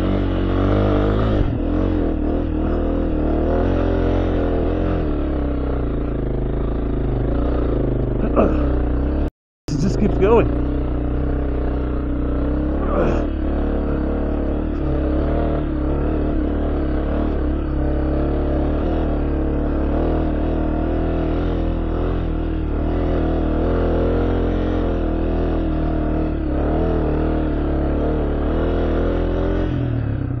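Honda CRF250F single-cylinder four-stroke dirt bike engine running at steady revs while riding a trail, with no big revving sweeps. The sound drops out completely for a moment about nine seconds in.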